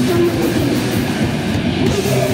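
Hardcore punk band playing live: heavily distorted electric guitar and bass over a fast drum beat, loud and dense, with the cymbals' hiss thinning briefly near the end.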